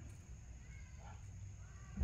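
Quiet outdoor background: a low steady hum and a faint steady high whine, with faint short calls about a second in.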